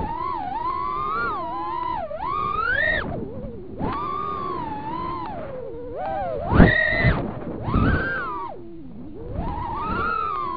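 Emax 1106 6000kv brushless motors of a small 3S FPV quadcopter whining, heard through the quad's onboard camera, the pitch sliding up and down with the throttle and dropping away briefly about three and a half seconds in and again near nine seconds. A short loud thump about six and a half seconds in.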